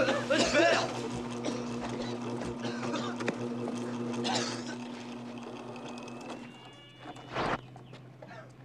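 Electric guitars through an amplifier: wavering squealing notes at first, then one held note over amplifier hum that fades out about six and a half seconds in. About a second later comes a short, loud burst of noise as the power blows.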